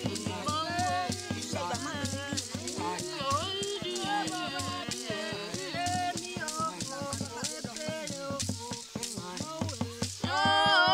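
Bayaka polyphonic singing: several voices overlap in interlocking lines that glide up and down in pitch, over a steady percussion beat of about three or four strokes a second.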